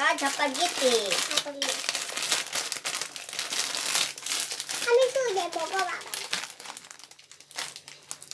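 Plastic instant-ramen packet crinkling as it is handled and pulled open, with a voice over it in the first second or so and again about five seconds in.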